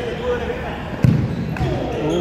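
A futsal ball kicked once, a sharp thud about a second in, followed by a fainter knock, among players' voices.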